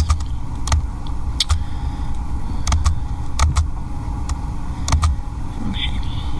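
Scattered clicks from working a laptop, about ten in all, some in quick pairs, over a steady low room rumble.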